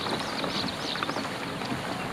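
Steady wind noise on the microphone with water washing along a slowly moving kayak, and a few short high chirps near the start.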